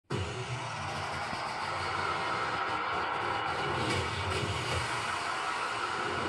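Steady opening music and sound design of a TV show, a low rumble under a continuous wash of sound, heard through a television's speaker. It starts abruptly.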